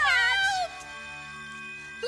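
A cartoon animal's yowl, one cry falling in pitch for well under a second, followed by a quieter held chord of background music.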